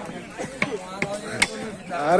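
Cleaver chopping pork on a wooden block: about five sharp, irregularly spaced chops.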